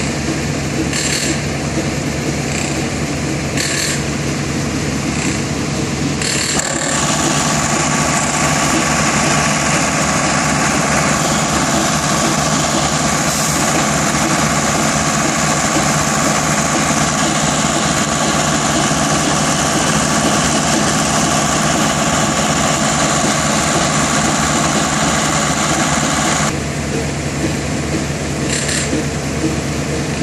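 Concrete pump and ready-mix truck running steadily while concrete is pumped through a hose. It is louder, with a steady whine, for the middle twenty seconds. Near the start and end a short knock recurs about every second and a half.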